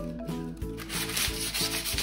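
Hand sanding of a small wooden part with a sheet of sandpaper: a rough scratching hiss of paper rubbing on wood, which grows louder about halfway through.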